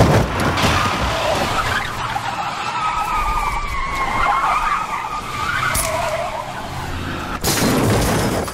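Car tyres screeching in a long, wavering skid after a sharp hit at the start, ending in a loud crash near the end.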